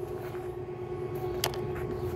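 Steady background hum with a single sharp click about one and a half seconds in, a hand tool knocking against the engine while the thermostat housing bolts are tightened.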